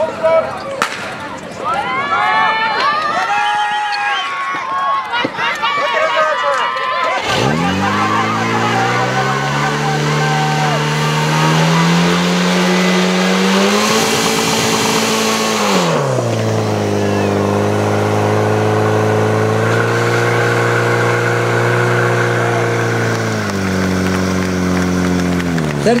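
Voices, then about seven seconds in a portable fire pump's engine starts abruptly and runs loudly under load. Its pitch climbs, peaks for a couple of seconds in the middle, drops back to a steady run and rises again near the end.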